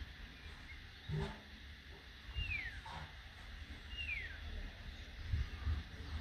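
A bird giving two short, clear, downward-gliding whistled calls about a second and a half apart. Wind rumbles low on the microphone throughout, with a soft thump about a second in.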